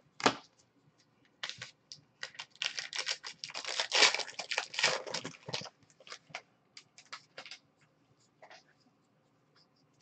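Foil wrapper of a 2021-22 Donruss basketball card pack being torn open and crinkled. A sharp crackle comes just after the start, then a dense run of tearing and crinkling lasts about three seconds in the middle, and it tails off into scattered crinkles.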